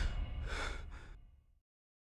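A low rumble dying away under two short breathy hisses, one about half a second in and a shorter one just before one second, then the sound cuts to silence about one and a half seconds in.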